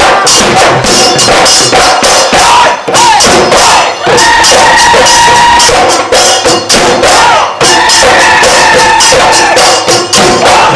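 Bihu music played live: dhol drums beaten fast with jingling metal percussion. A long held high note runs from about four seconds in until just before the end.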